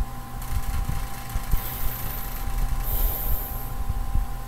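Low background rumble that rises and falls unevenly, under a faint steady hum.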